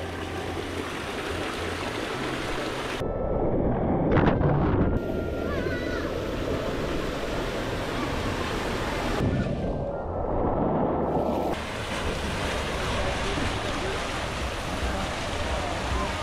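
Water rushing down an open water slide as riders slide down it: a steady wash of running water that changes abruptly a few times.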